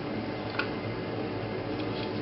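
Steady mechanical hum with hiss, as from room or lab equipment, with one light click just after half a second in and a couple of fainter ticks near the end.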